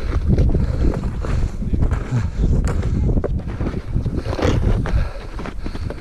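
Wind buffeting the microphone, a heavy uneven low rumble, over crunching snowshoe steps in snow.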